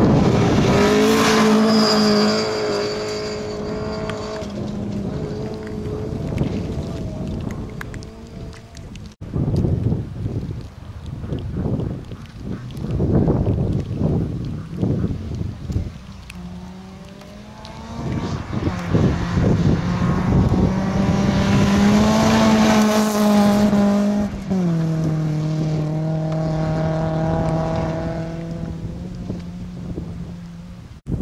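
Rally cars at full throttle on a gravel stage: an engine revving hard and dropping in pitch at a gear change about two seconds in. Later a BMW 3 Series (E36) rally car approaches, its engine note climbing and then falling sharply at an upshift near the end, over tyre and gravel noise.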